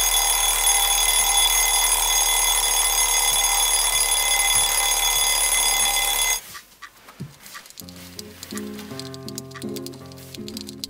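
Alarm clock ringing loudly and steadily, cutting off suddenly about six seconds in. A few seconds later, soft music with a simple melody begins.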